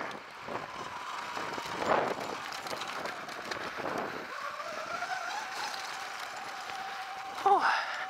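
Sur-Ron Light Bee electric dirt bike riding on a gravel road: a thin motor whine over tyre and wind noise, rising in pitch about four seconds in as it speeds up, then holding steady.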